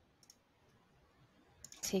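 A couple of faint computer mouse clicks, then a man's voice begins near the end.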